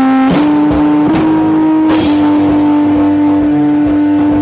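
Stoner rock band playing live: electric guitars hold long sustained notes that shift pitch a few times, over a drum kit.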